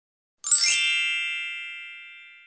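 A chime sound effect for an animated logo reveal: a sudden bright, sparkling strike about half a second in, then a ringing chord that fades slowly over about two seconds.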